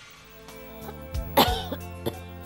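A woman coughing over soft, sustained background music: one loud cough about one and a half seconds in, with smaller coughs around it.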